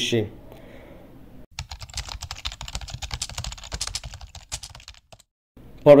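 Rapid, irregular clicking that starts about a second and a half in and stops suddenly some three and a half seconds later.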